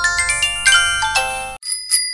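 Intro music with a quick run of bright, chiming bell-like notes that cuts off about a second and a half in, followed by a single high ding that rings on.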